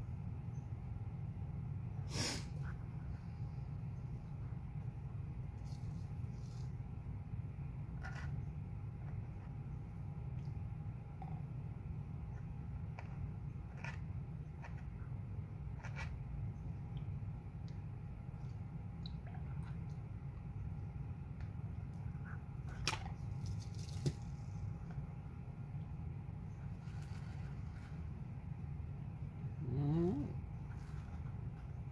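Plastic gold pan being swirled and tipped in a tub of water to wash paydirt down to its final concentrate: soft water movement with scattered sharp clicks and knocks of the pan, the clearest about two seconds in and a pair a little past twenty seconds. A steady low hum runs underneath.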